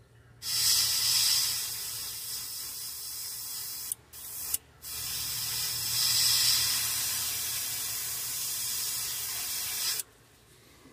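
Airbrush spraying paint through a stencil onto a fishing lure: a steady hiss that starts half a second in, breaks off twice in quick succession about four seconds in, then sprays on.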